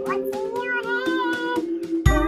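Music: a high sung voice holds long notes, gliding between pitches, over a steady beat.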